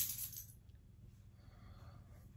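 A dog's metal collar tags jingling as the dog scratches itself, dying away within the first half second.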